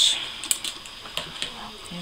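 Scissors snipping through a strand of craft pearls: a sharp snip at the start and another about half a second later, followed by a few light clicks as the cut piece is handled.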